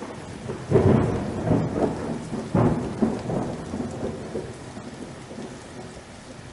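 Thunderstorm: two loud thunderclaps, the first about a second in and the second near the middle, each rumbling away over steady rain that slowly fades.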